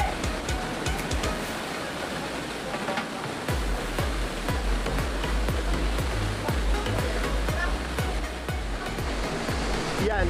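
Steady rush of a small waterfall pouring into a rock pool, with background music with a steady beat over it; deep bass notes come in about three and a half seconds in.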